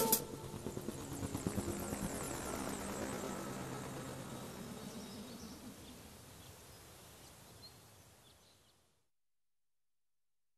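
A low, noisy ambient tail left after the song stops, fading out steadily to silence about nine seconds in.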